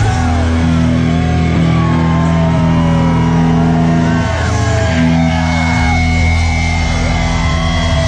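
Live crossover-thrash band playing loud through the PA: distorted electric guitars and bass hold long low chords over drums, changing chord about four seconds in.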